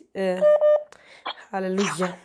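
A person speaking, with a short steady beep-like electronic tone about half a second in.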